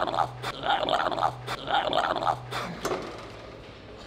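A man breathing hard and grunting through a set of reps: about three strained, growly exhalations, each broken by a quick sharp breath, easing off about three seconds in.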